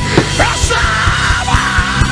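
Live worship band with a drum kit keeping a steady beat of about four strokes a second over sustained low chords, and a man's voice through a microphone shouting long, held notes through the second half.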